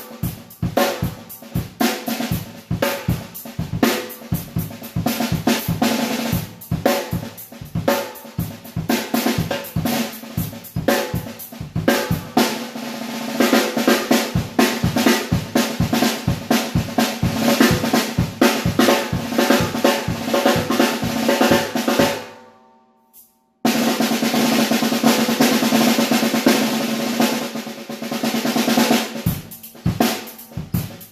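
Premier Olympic 14-inch chrome-over-steel snare drum played with sticks, unmuffled, on its original heads (Evans Uno batter, Premier stock head underneath): separate sharp strokes at first, then fast, dense strokes from about halfway. The playing stops for about a second two-thirds of the way through, then starts again.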